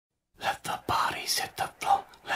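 A person whispering in short syllable bursts, beginning about a third of a second in.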